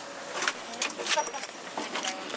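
Handling noise from a camera carried among people: a few sharp clicks and metallic jingles, like keys, with faint voices beneath.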